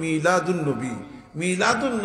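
A man speaking into a microphone, with a short pause about halfway through.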